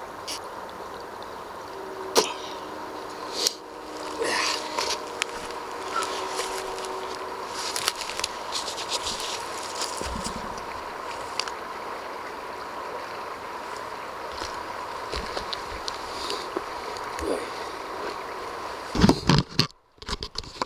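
Intermittent slurps of creek water being sucked through a LifeStraw personal water filter straw, over a steady background hiss with a faint constant tone. Loud handling knocks near the end.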